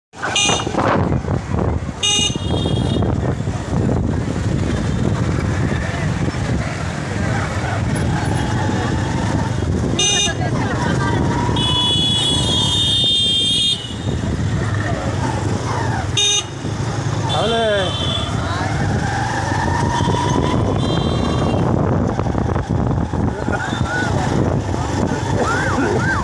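Busy street traffic heard from a moving vehicle: steady engine and road noise, with vehicle horns tooting again and again and one longer honk about halfway through.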